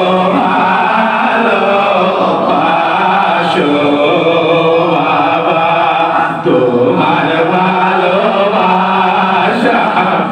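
Congregation of men chanting together in Sufi devotional zikr, loud and continuous, with a brief break about six and a half seconds in before the chant picks up again.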